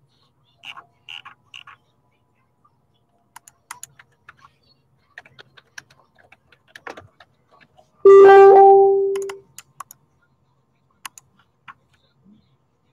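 Hard plastic card cases and top loaders clicking and tapping as they are shuffled around on a table. About eight seconds in comes a loud, steady pitched tone lasting about a second and a half that fades out.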